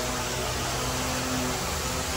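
Steady background hum and hiss of running shop machinery, with a low drone underneath.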